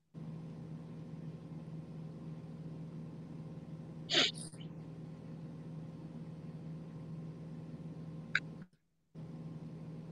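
Steady low electrical hum and background hiss, with one brief sharp sound about four seconds in and a faint click near the end. The sound cuts out completely for a moment just before the end.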